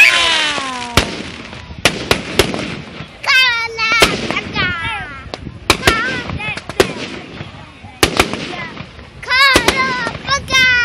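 Aerial fireworks bursting overhead: a dozen or more sharp bangs, irregularly spaced, with the loudest right at the start. High-pitched voices cry out twice, partway through and again near the end.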